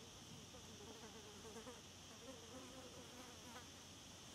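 A fly buzzing faintly, its pitch wavering up and down as it moves about, with short breaks.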